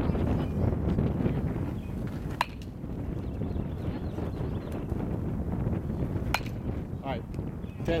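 An aluminum baseball bat hitting a ball twice, about four seconds apart. Each hit is a sharp crack, and the first has a short ringing ping. A steady low rumble runs underneath.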